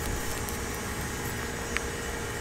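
Steady background noise with a faint hum, broken by a few faint clicks and one short, higher-pitched sound near the end.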